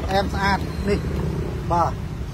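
A person talking in short bursts over a steady low background rumble.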